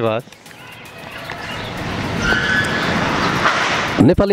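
A road vehicle approaching, its noise growing steadily louder over about three seconds.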